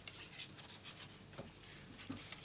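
Cardstock and die-cut paper pieces being handled on a plastic cutting plate: faint rustling with several short scrapes as pieces are pulled apart and picked up.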